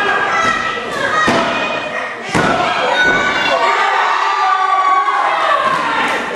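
A few heavy thuds of wrestlers hitting the canvas of a wrestling ring, the loudest a little past two seconds in, amid shouting voices.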